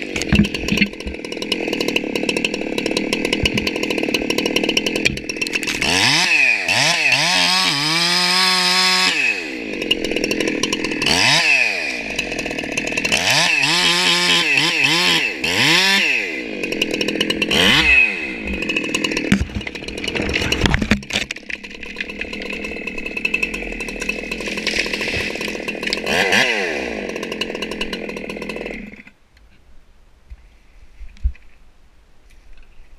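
Husqvarna 372XPW two-stroke chainsaw cutting into the base of a redwood under load, its engine note dipping and climbing back several times as it works through the cut. The saw stops abruptly about a second before the end.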